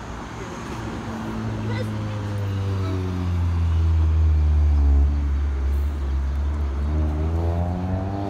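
A motor vehicle engine passing close by on the street, its low hum dropping in pitch, loudest about halfway through, then climbing again as it pulls away.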